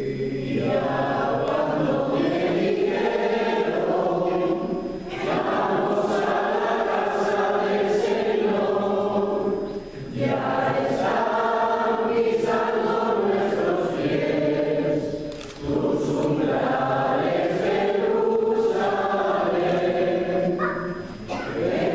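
A choir singing a slow hymn in sustained phrases, with short breaths between phrases about every five seconds.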